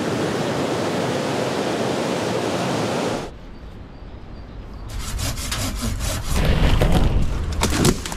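Storm wind rushing through trees, a steady even noise that cuts off sharply about three seconds in. Then footsteps crackling through dry twigs and brush among fallen branches, with a low rumble of wind on the microphone.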